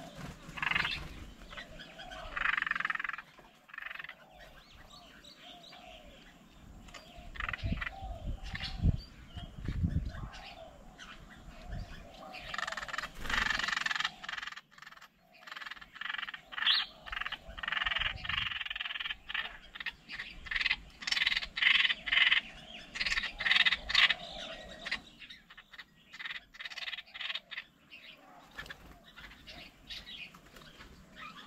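Animal calls outdoors, coming in repeated bursts of a few seconds each, with many short sharp clicks between them and a low rumble about eight to ten seconds in.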